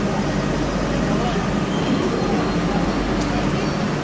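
Steady hum of a stationary Rodalies de Catalunya electric commuter train at the platform, with passengers' voices over it.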